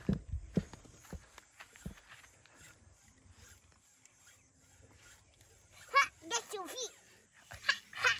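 Mostly quiet outdoor ambience with a few soft low knocks at the start and faint scattered clicks, then a young child's high-pitched excited voice, a few short calls about six seconds in.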